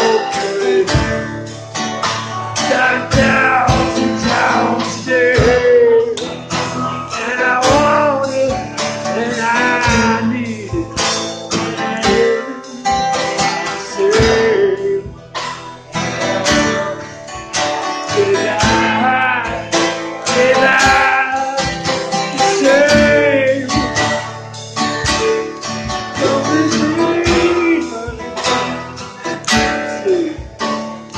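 Live acoustic guitar song: strummed acoustic guitar over a steady drum beat, with a singing voice.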